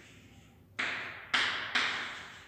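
Chalk writing on a blackboard: three sharp chalk strokes come in quick succession about a second in, each sudden at the start and then fading.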